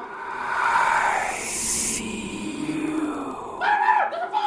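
A rushing, hissing noise that swells and stops abruptly about halfway through, leaving a softer rush that dies away near the end.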